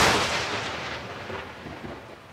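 A single loud boom that hits at once and decays into a long, fading reverberant rumble.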